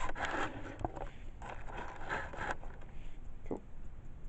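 Clear plastic packaging insert crinkling and scraping as it is handled, in a run of scratchy bursts over the first two and a half seconds, with a sharp click a little under a second in.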